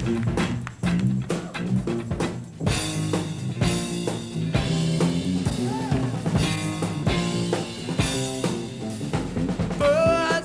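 Live funk-soul band playing an instrumental intro: drum kit with snare and bass drum, and electric guitar. The band gets fuller and brighter about three seconds in.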